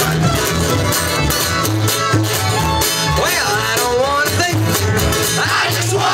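Live bluegrass string band playing an up-tempo tune on fiddle, upright bass and acoustic guitar, the bass marking a steady beat. Voices whoop about halfway through and again near the end.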